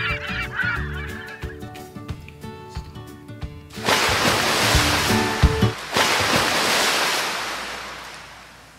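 A light tune with honking, gull-like bird calls over it for about the first second, the tune running on alone to about four seconds in. Then a surf sound effect, waves washing in two long swells with a couple of sharp knocks, fading near the end.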